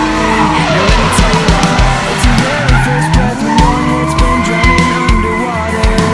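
Drifting Nissan 350Z, its engine revving up and down and its tyres screeching as it slides, under background music with a steady beat.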